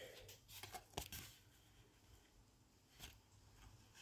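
Near silence, broken by a few faint ticks and rustles of a cardboard trading card being handled and turned in the fingers.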